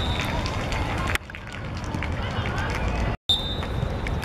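Outdoor ambience of a youth football match: players' voices calling over steady background noise. It is broken by an abrupt change about a second in and a brief total dropout near the end.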